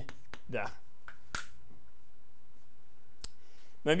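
A few sharp chalk taps on a blackboard in the first second and a half, then one more single sharp click a little after three seconds in.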